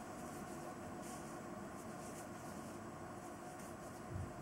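Steady faint background hiss with a few soft, brief rustles of loofah yarn being drawn through loops on a crochet hook.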